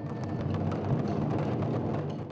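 Several taiko drums struck with wooden sticks at once, a dense run of overlapping hits that blur into a continuous din, growing a little louder about a second in.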